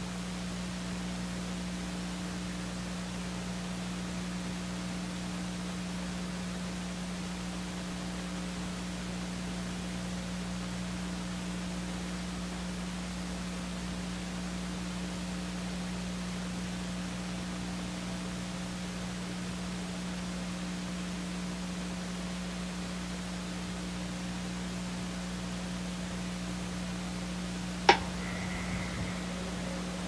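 Steady hiss with a low electrical hum and no other sound, broken once near the end by a single sharp click.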